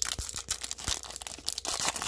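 Foil wrapper of a Panini Select baseball card pack being torn open and crinkled by hand: an irregular run of tearing and crinkling crackles.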